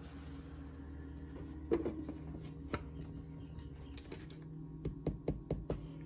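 Scattered light clicks and taps of handling: the small incubator's plastic lid being fitted on and items set down on a countertop. A faint steady low hum runs underneath, and the taps come closer together near the end.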